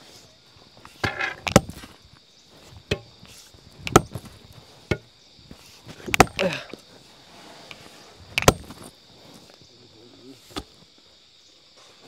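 A pickaxe and an iron crowbar striking rock and hard-packed earth, irregular sharp blows about every one to two seconds, breaking the rock into small pieces to clear ground for a house foundation.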